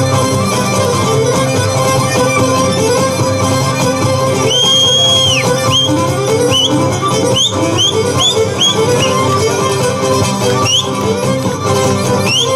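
Live Cretan dance music on lyra with laouto accompaniment, a quick repeating melodic figure played steadily throughout. About halfway through a long high whistle-like note sounds over the music, followed by a run of short upward chirps.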